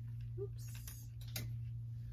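A few light clicks and rustles from handling a dress on its hanger, over a steady low hum, with a brief spoken "oops" early on.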